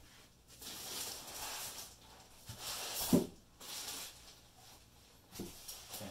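Rustling and scraping of foam and plastic packaging being handled, in several bursts, with a sharp knock about three seconds in.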